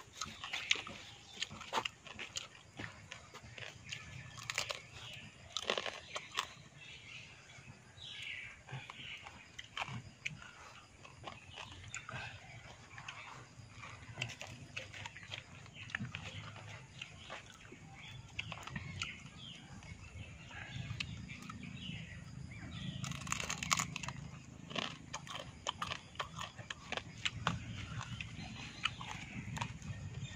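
Close-up sound of a person eating by hand: biting and chewing crunchy food, with many irregular sharp cracks and crunches and a dense run of them about three-quarters of the way through.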